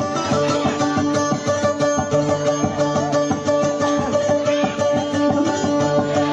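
Amplified guitar picking a fast, ornamented melody over a held low note: an instrumental passage of dayunday music, with no singing.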